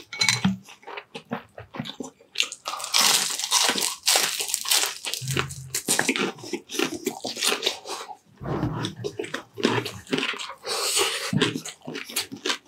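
Crispy fried chicharon bulaklak (deep-fried pork mesentery) being crunched and chewed close to the microphone: a rapid run of sharp crunches, densest about three seconds in and again near the end.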